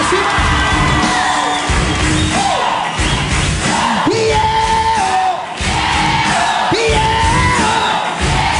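A sertanejo duo performing live: a male voice singing with long held notes over a band with electric guitar, and a studio audience yelling and cheering along.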